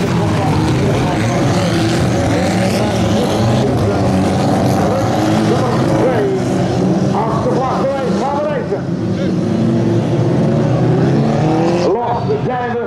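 A pack of autocross cars racing together on a dirt track, many engines running hard at once in one dense, steady din.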